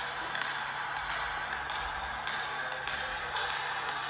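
A basketball bouncing on a hardwood gym floor: faint, evenly spaced bounces of a dribble over a steady hiss.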